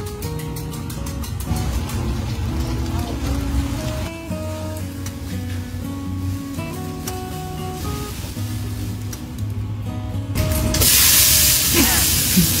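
Background music with steady melodic notes; near the end, a loud sizzle as tomatoes hit the hot oil in a wok.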